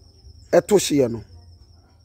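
A cricket's steady high-pitched trill, with a short spoken word breaking in about half a second in.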